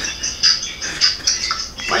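A man laughing in short, breathy bursts, a few per second.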